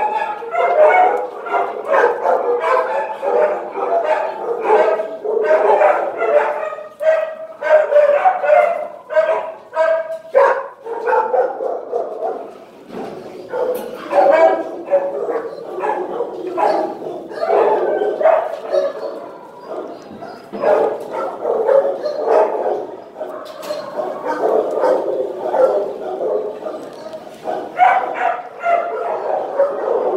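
Many shelter dogs barking at once, a continuous chorus of overlapping barks that eases a little in the middle.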